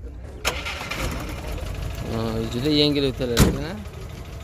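A Moskvich car's engine being started and then idling.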